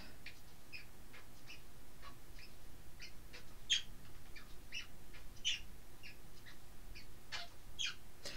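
A small bird chirping faintly: short, separate chirps at an uneven pace, about two or three a second.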